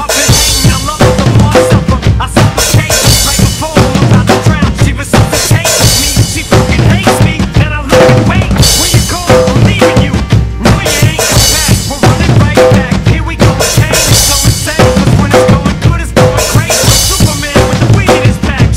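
Acoustic drum kit played in a steady beat, with bass drum, snare and cymbal hits, along with a recorded song whose pitched instrumental part runs underneath.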